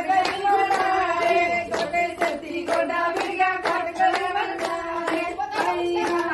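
A group of women singing together in unison while clapping along in a steady rhythm, about two claps a second.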